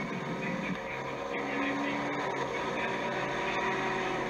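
Steady mechanical hum with a few held tones, coming from a television's speaker during a live cycling-race broadcast and picked up off the set in a room.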